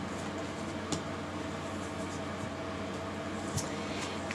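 Steady background hum of room tone, with two faint ticks: one about a second in and one near the end.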